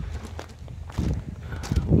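Footsteps walking across a paved patio, a few irregular steps heard against low outdoor rumble.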